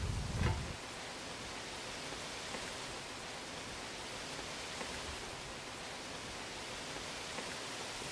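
Steady, even outdoor hiss, with a brief low rumble in the first second.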